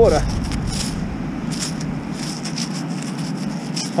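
A gloved hand handling a freshly dug coin and grit: short, scattered scratchy clicks over a steady outdoor background hum, with a low rumble that fades after about two seconds.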